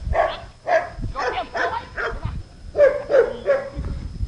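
A dog barking repeatedly, about two barks a second, with a short pause a little past the middle.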